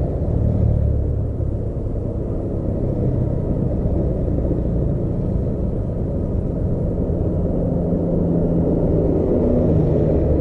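Steady low rumble of road traffic and vehicle motion heard from a slow-moving vehicle on a busy road. Over the last few seconds a steady engine hum comes in, as a heavy truck draws alongside.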